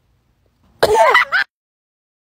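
A person's short vocal sound, about a second in and lasting just over half a second.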